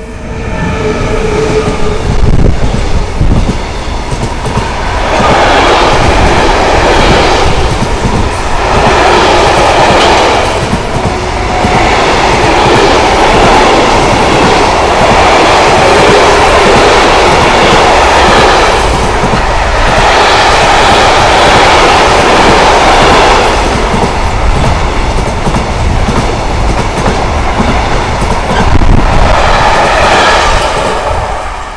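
Container freight train hauled by an ES 64 F4 (class 189) electric locomotive passing close at speed: the locomotive goes by first, then a long string of container wagons with rapid clickety-clack of wheels over the rails. The loud rolling noise swells and eases as the wagons pass and begins to fade right at the end as the last wagon goes by.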